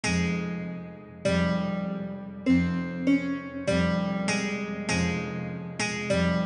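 Slow, sparse melody of single plucked guitar notes, each ringing out and fading, over a low sustained bass, with no drums. There are about eight notes in all, spaced about a second apart at first and coming a little faster later.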